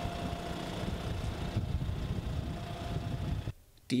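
A Fendt Vario tractor's diesel engine running steadily, with a low rumble and a faint held tone, until it cuts off suddenly about three and a half seconds in.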